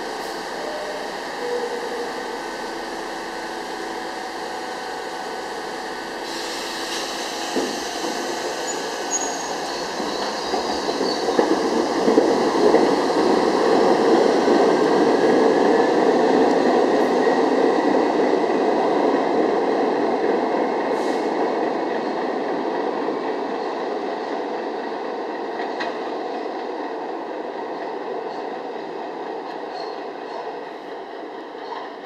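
New York City Subway R68-series train running through the station: steady rumble and wheel-on-rail noise that builds to its loudest about halfway through as a train passes close, then fades.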